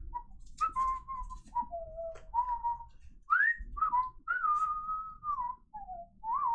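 A man whistling a meandering tune: a run of held and sliding notes that rise and fall, with a few faint clicks of handling in between.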